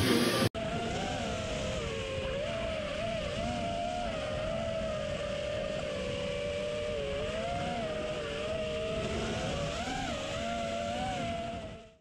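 A loud noisy burst cuts off abruptly about half a second in. Then the brushless motors of an FPV quadcopter in flight whine steadily over wind noise, the pitch wavering up and down as the throttle changes, and fading out at the end.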